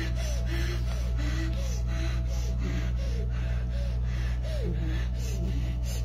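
Soft background music with a light, steady beat of about two strokes a second and a short wandering melody, over a constant low hum.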